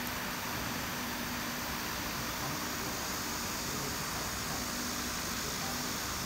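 Steady hiss and hum of running machinery, such as cooling or extraction fans, with a faint steady low tone underneath and no cutting or other sudden sounds.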